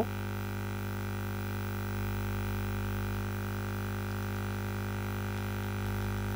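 Steady electrical hum in the recording, a low drone with fainter steady tones above it, unchanging throughout.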